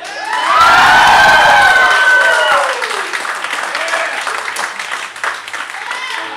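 Small audience clapping and cheering as a song ends, with one long whoop that falls away about two and a half seconds in, and the clapping carrying on after it.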